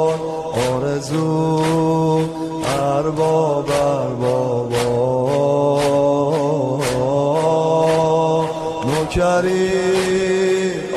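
Devotional chanting: a voice holding long, wavering notes over a steady drone, with a sharp beat falling roughly once a second. The notes shift in pitch about nine seconds in.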